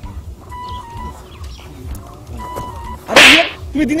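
A single loud, sharp hit lasting under half a second, about three seconds in, as one man goes down onto the ground, heard over faint background music.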